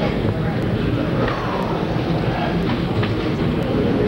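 A loud, steady rumbling roar on an amateur street-level videotape's soundtrack as the hijacked airliner strikes the tower and the fireball erupts, with onlookers' voices crying out faintly.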